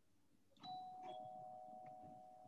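A two-note chime, a higher note about half a second in followed by a slightly lower one, both ringing on, like a ding-dong doorbell.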